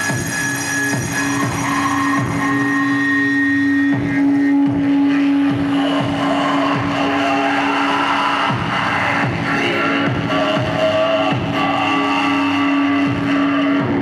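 Live harsh noise music: a dense, loud wall of distorted electronic noise from an effects-pedal and mixer rig, with a steady droning feedback-like tone held from about a second in until just before the end. A voice is screamed into a microphone and fed through the rig, buried in the noise.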